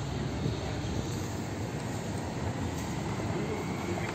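Steady roadside traffic noise with a low vehicle engine rumble.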